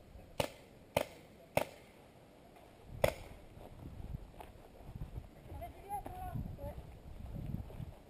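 Paintball marker shots: three sharp pops in quick succession about half a second apart, then a fourth a second and a half later. A faint distant voice calls out near the end.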